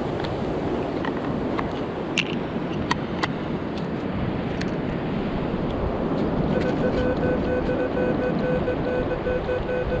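Wind and surf hiss with a few small clicks in the first few seconds. About six and a half seconds in, a metal detector starts sounding a steady, slightly stuttering tone as its coil sweeps over a buried target, which reads fourteen-fifteen on the display.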